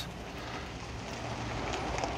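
Steady outdoor background noise: an even, low rumble with no distinct events.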